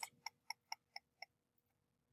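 Faint computer mouse-button clicks, five in a row about four a second, stopping after a little over a second.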